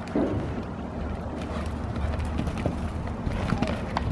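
A horse cantering on a sand arena, its hoofbeats soft and irregular, over a steady low rumble.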